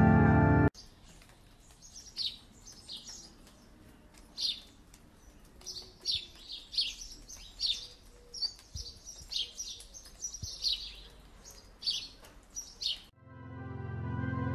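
Small birds chirping: many short, high calls with gaps between them, over a faint outdoor hush. Music stops abruptly just under a second in and fades back in near the end.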